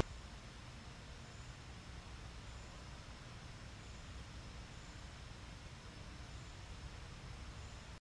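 Faint steady background noise: a low hum with a light hiss and no distinct sound in it.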